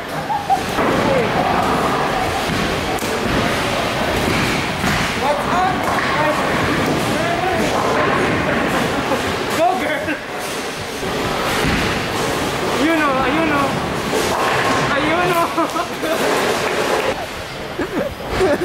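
Busy bowling alley din: people talking and calling out over a steady noisy background, with occasional thuds of bowling balls and pins.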